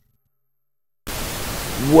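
Silence for about a second, then a sudden, steady burst of TV-static hiss, a static transition effect at a cut in the video.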